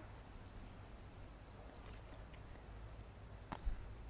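Faint crunching of a toddler's boots stepping in snow, with one sharper knock about three and a half seconds in.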